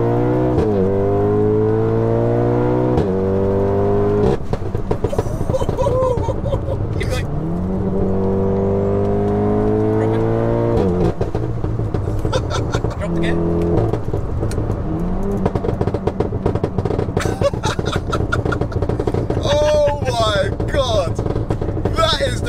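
Big-turbo 2.0-litre four-cylinder of a tuned VW Golf R accelerating hard, its pitch rising in sweeps broken by sudden drops at the gear changes. From about halfway comes a rapid machine-gun crackle of pops and bangs from the anti-lag map.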